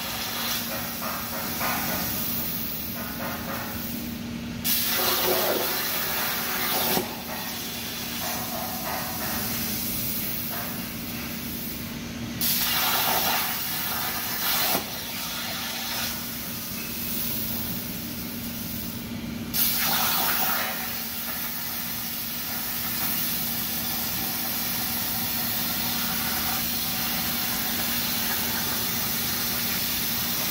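Hypertherm Powermax 105 air plasma torch on a CNC cutting table cutting steel plate: a loud hiss that swells in three short spells, each starting and stopping abruptly, then settles into a longer steady cut in the last third.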